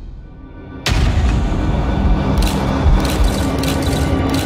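Trailer sound design: a brief quiet, fading lull, then a sudden deep boom hit a little under a second in, opening into loud dramatic score with steady held tones. A few sharp hits or cracks sound in the second half.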